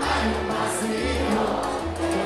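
Live salsa band playing, with bass, percussion and several voices singing together.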